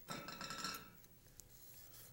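Knife cutting down through a pineapple's tough rind on a wooden cutting board: a click, then a faint rasping crunch for about a second.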